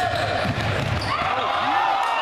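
Indoor basketball game: the ball bouncing on the hardwood court with low thumps, amid spectators' chatter in the gym.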